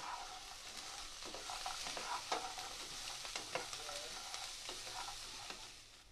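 Fried soya chunks sizzling in a nonstick kadhai as a wooden spatula stirs them, with short scrapes and taps of the spatula against the pan. The sizzle dies down near the end.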